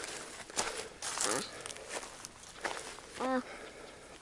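A person's footsteps on outdoor ground, a few soft irregular steps and clicks, with a brief murmured voice near the end.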